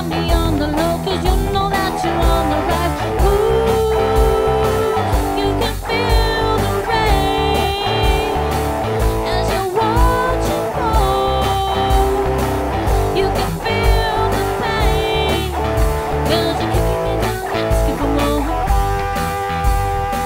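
Rock band playing: electric guitars over a steady drum beat.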